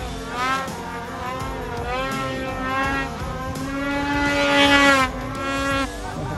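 Snowmobile engine revving hard in deep powder, its pitch climbing and dropping with repeated bursts of throttle. It is loudest in a long rev just before the end.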